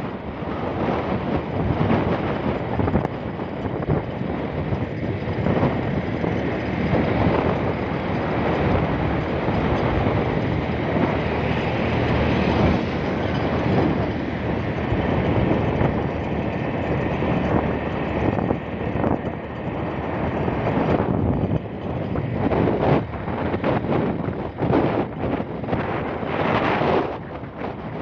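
Wind rushing over the microphone on a moving motorcycle, mixed with the bike's engine and road noise. The rush turns choppier and gustier in the last few seconds.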